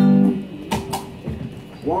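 An electric guitar chord rings and fades out about half a second in, followed by two sharp clicks about a second in. Near the end a voice begins a count-in to the song.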